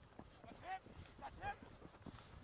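A few faint, distant shouted calls from players on a rugby pitch, over a low background of open-air noise.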